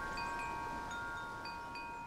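Chimes ringing and slowly fading: several bell-like notes held together, with a few soft new strikes scattered through.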